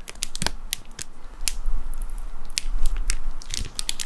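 Close-miked spoon drizzling melted chocolate over a cheesecake: scattered sharp clicks and sticky ticks at an irregular pace, over a low rumble of small bumps that is heaviest a little past the middle.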